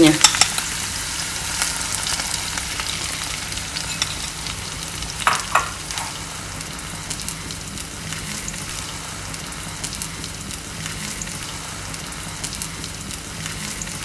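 Beaten egg frying in a hot oiled pan with tomato, sizzling steadily with a fine crackle as it is stirred, with a couple of short louder scrapes about five seconds in. The sizzle gets a little quieter as it goes.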